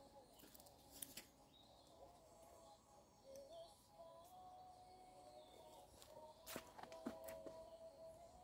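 Near silence: faint outdoor ambience with a faint wavering steady tone and a few brief faint clicks, about a second in and twice near the end.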